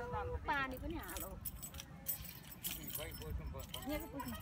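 A young child's short high voice near the start, then about two seconds of light, crisp rattling handling noise.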